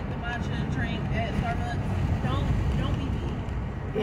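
Steady low road and engine rumble inside a moving car's cabin, with quieter talking over it.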